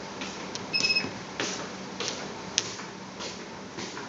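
A single short electronic beep from the Autocon 2000 controller's keypad as a button is pressed to open the test-results summary, with a few faint clicks around it.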